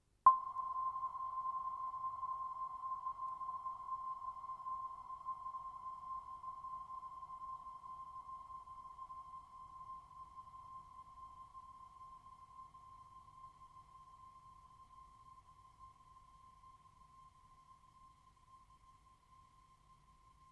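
A single pure tone from the dance score, sounded once sharply just after the start. It rings on at one steady pitch, fading slowly and evenly.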